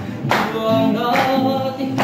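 Singing accompanied by a strummed acoustic guitar, with a chord struck about once a second.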